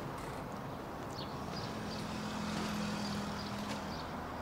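Quiet outdoor background noise, with a faint, low, steady hum joining about a second and a half in and fading just before the end.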